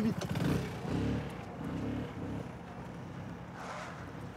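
Motor scooter engine running, louder in the first second or two, then dying down.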